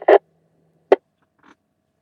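Dead air on an amateur radio net channel between transmissions, broken by a short sharp blip about a second in and a fainter one half a second later.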